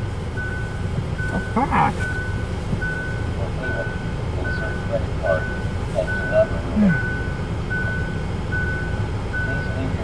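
An electronic beeper sounding a short, high, single-pitched beep about every 0.8 seconds, steady and unchanging, over a low vehicle rumble inside a car.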